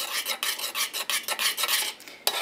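A utensil scraping round and round the bottom of a stainless-steel saucepan in quick repeated strokes, about five or six a second, stirring cornstarch slurry into boiling water to keep clumps from forming. The strokes fade near the end.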